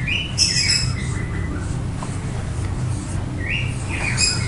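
Dry-erase marker squeaking against a whiteboard in short strokes as words are written, over a steady low hum.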